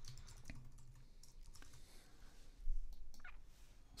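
Faint typing on a computer keyboard: scattered keystrokes, with a louder quick run of taps about two and a half seconds in.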